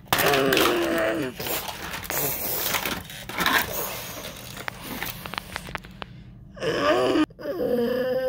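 A child's voice making play sound effects, with plastic toy dinosaurs and playset pieces knocking and clattering in between. The vocal sounds come in the first second or so and again near the end.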